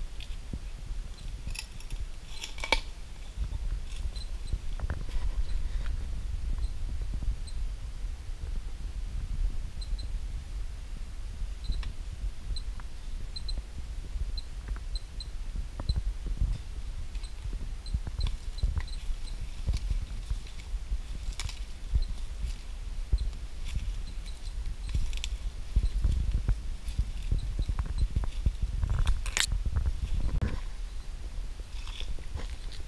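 Footsteps crunching irregularly over leaf litter and debris, with a steady low rumble on the microphone.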